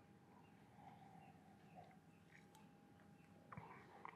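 Near silence: room tone, with a faint click about three and a half seconds in.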